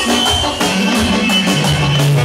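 Loud live band music with a drum beat and a bass line that steps down in pitch partway through, with a clarinet playing along.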